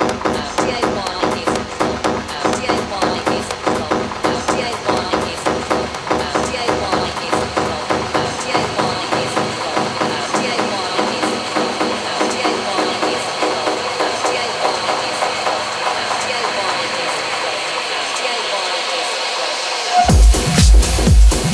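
Electronic techno track in a breakdown: a dense pulsing synth pattern at about two beats a second, its bass thinning out and fading away over the second half while a high tone grows stronger.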